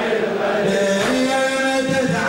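Male voice chanting a Shia Muharram latmiya lament: a slow, drawn-out sung line that settles on a long held note about halfway through.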